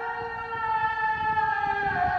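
Muezzin singing the call to prayer (adhan): one long held note that slips slightly lower near the end.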